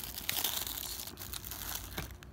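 Foil toaster-pastry wrapper crinkling with irregular crackles as it is pulled open by hand.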